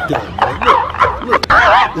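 High-pitched laughter from a man, wavering up and down in pitch in short yelping pulses, with a sharp click about one and a half seconds in.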